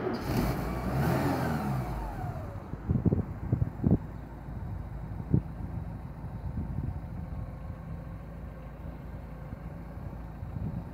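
A car engine idling, while another vehicle passes on the road in the first couple of seconds, its pitch falling as it goes by. A few short knocks come about three to four seconds in and once more about halfway through.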